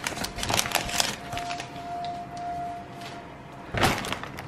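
A shopping bag and the bottles and packages in it being handled and rummaged through: quick rustles and small clicks, with a louder knock near the end. A faint steady tone holds for a couple of seconds in the middle.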